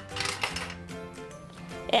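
Light background music, with a quick run of plastic-and-metal clicking and rattling near the start as the coin crank of a toy Dubble Bubble gumball bank is turned and gumballs drop out.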